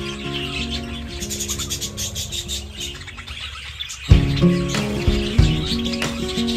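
A flock of budgerigars chirping over background music. The music's heavy low beat comes in about four seconds in.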